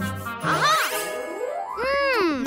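Cartoon sound effects: a bright ringing ding at the start, then a long sweep rising in pitch.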